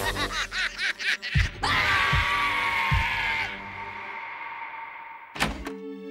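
Cartoon soundtrack of music and sound effects: snickering cartoon laughter at first, then three low thumps under a whooshing effect with a slowly falling tone. A sharp hit comes near the end, and gentle music follows.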